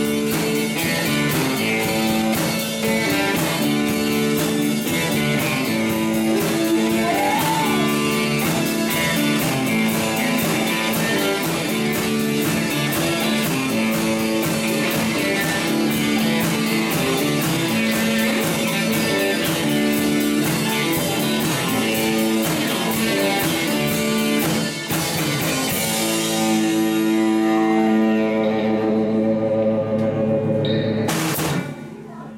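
Live rock band playing: strummed electric and acoustic guitars over a steady drum-kit beat. Near the end the drums stop and a final chord is held, ringing out as the song finishes.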